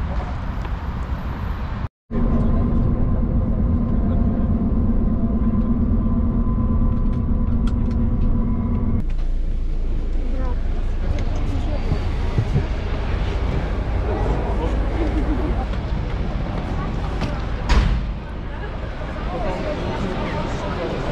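Steady engine drone of a coach bus heard from inside the passenger cabin, with a held low hum, which cuts off abruptly after about seven seconds. It gives way to a noisier bustle of faint voices and movement, with a single sharp knock near the end.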